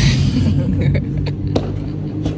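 Steady low rumble of car engines idling in a large indoor hall, with a brief hiss right at the start and a few light clicks.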